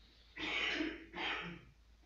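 A person clearing their throat twice in quick succession.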